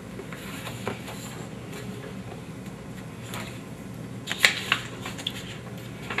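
Photographs and papers being handled on a table: soft rustling with a few sharp clicks about four and a half seconds in, over a steady low room hum.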